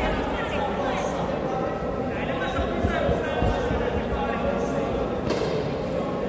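Indistinct voices talking in a large sports hall, with a few dull thumps around the middle.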